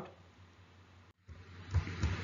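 Faint room tone: low microphone hiss and hum, cutting out completely for an instant about a second in, then returning a little louder near the end with a faint click.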